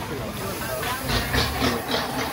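People talking close by in a passing boat, loudest in the second half, over a steady low rumble and hiss.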